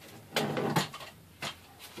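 Handling noise from a plastic pistol-grip RC radio transmitter being lifted down off a shelf: a cluster of knocks and scrapes about half a second in, then a single sharp click.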